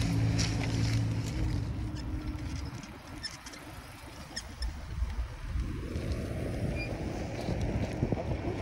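E-bike riding over parking-lot asphalt: tyre and rolling noise with small clicks and rattles from the bike. A low hum fades out over the first two seconds, and wind rushing on the handlebar microphone picks up from about six seconds in.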